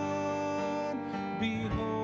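Live worship music led on strummed acoustic guitar, with long held notes that change every second or so.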